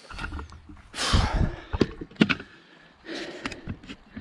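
A person climbing over a wire fence and picking up the camera. There is a rush of rustling with a low thump about a second in, then several sharp clicks and knocks.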